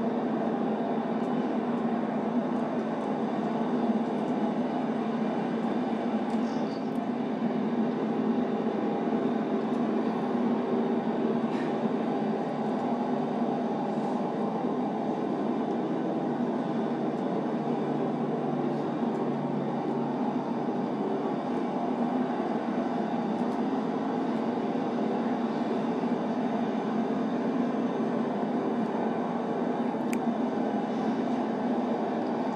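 Steady traffic rumble with a constant low hum, from the soundtrack of a roadside crime-scene video played back in the courtroom.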